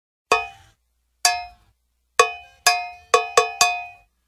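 A cowbell struck seven times, each hit ringing briefly and dying away. The strikes come quicker toward the end, as the count-in of a song.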